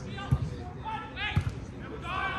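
Shouting voices of football players and spectators across the pitch, no words clear, with two dull low thumps, about a third of a second and about a second and a half in.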